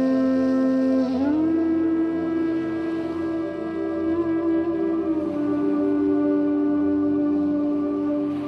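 Slow ambient meditation music: long-held, pitched tones that rise to a higher note about a second in and settle a little lower about five seconds in.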